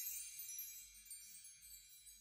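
Faint high chime tones shimmering and fading away as the music's closing tail dies out.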